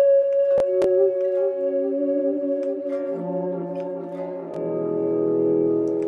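Electric guitar, a Fender Jaguar, played with volume swells for a violin-like sound: held notes fade in one after another with no pick attack and stack into a chord that swells fuller a little past the middle. Two short clicks come under a second in.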